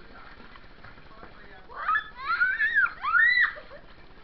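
A child squealing in play: about three high-pitched cries that rise and fall in quick succession, starting a little under two seconds in, over a quiet background.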